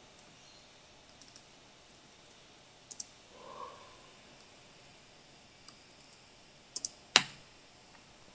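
Computer keyboard keys clicking sparsely as a terminal command is typed, with a quick cluster of keystrokes near the end and then one sharper, louder key press as the command is entered.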